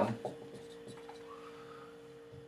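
Dry-erase marker writing on a whiteboard, faint scratching strokes over a steady low room hum.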